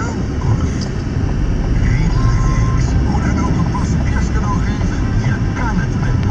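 Steady low rumble of a car's engine and road noise heard inside the cabin, with people talking over it.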